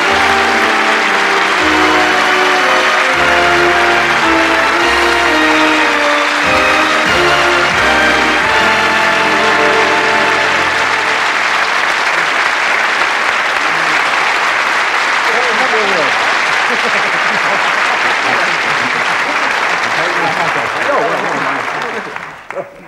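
Studio audience applauding over an entrance tune; the music ends about halfway through and the applause carries on alone, then drops off suddenly at the end.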